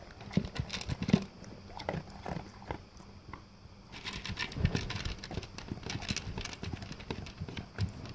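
An English cream golden retriever eating dry kibble from a plastic slow-feeder bowl: irregular crunching and chomping, with kibble and teeth clicking against the plastic. The chewing eases off briefly about three seconds in, then picks up again.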